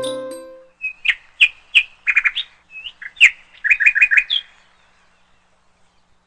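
Background flute music fading out, then a small bird chirping: a quick series of short, sharp high chirps lasting about three and a half seconds.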